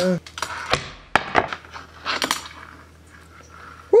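A fingerboard clacking against a tabletop and a small ledge during a kickflip nose grind: a few sharp clacks about a second in and another quick cluster a little past two seconds, with the small wheels and deck knocking on the hard surfaces.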